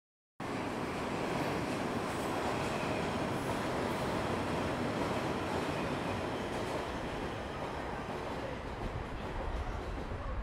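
An elevated metro train running past, a steady noise of wheels on the rails that cuts in sharply about half a second in and eases a little toward the end.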